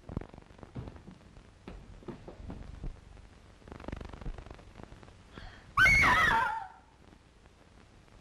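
A woman's short, shrill scream about six seconds in, falling in pitch. Before it come scattered soft knocks and shuffling.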